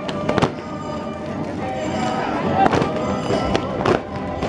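Live music for a folk dance, with steady held notes and crowd voices, broken by sharp bangs: two at the start and one near the end.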